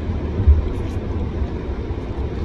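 Steady low rumble of road and engine noise inside a moving car's cabin, with a short low thump about half a second in.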